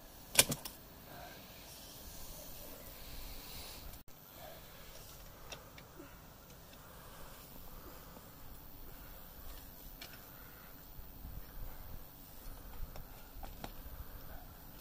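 A sharp click about half a second in, then a few faint clicks and knocks, as the metal clamp and arm of a FreeWheel wheelchair attachment are handled at the footrest.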